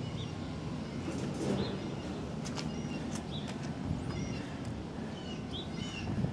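Small birds chirping outdoors: short high calls every second or two over a steady low background hum, with a few faint clicks.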